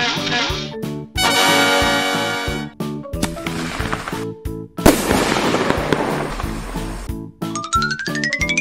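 Upbeat children's cartoon music with sound effects laid over it: a hissing burst, then a sparkling chime. About five seconds in comes a sudden loud pop with a long fizzing hiss after it, and near the end a rising whistle.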